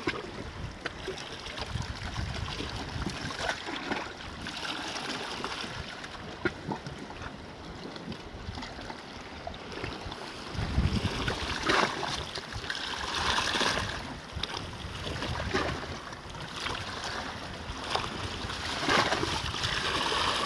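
Sea waves washing against coastal rocks, with wind buffeting the microphone. The water swells louder in a few surges, about eleven seconds in, again around thirteen seconds and near the end.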